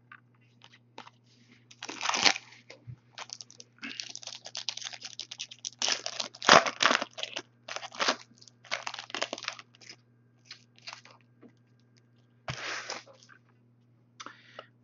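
A foil trading-card pack wrapper being torn open and crinkled by hand, in irregular bursts of crackling, loudest about halfway through.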